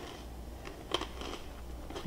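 Quiet mouth noises of a person chewing a piece of toasted bread bruschetta, with small crackles and one sharp click about a second in.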